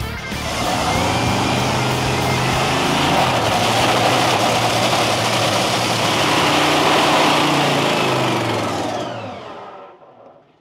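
Top Fuel dragster's supercharged nitromethane V8 running loudly during a pit warm-up. The sound is a steady, dense roar, and it fades out near the end.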